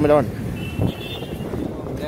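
A voice speaks briefly at the start, then steady outdoor background noise, with a faint high tone for about a second.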